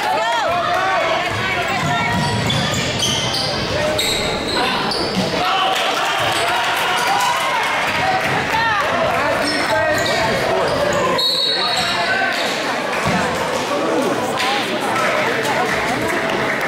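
Basketball game sounds in a large gym: a ball bouncing on the hardwood floor and players running, under the steady chatter of spectators' voices.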